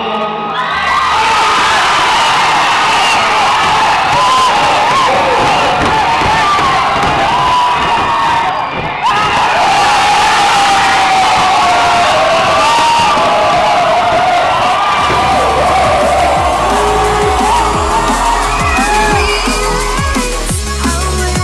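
A crowd cheering and screaming loudly, many high-pitched shrieks overlapping. Music with a heavy bass line comes in about three-quarters of the way through.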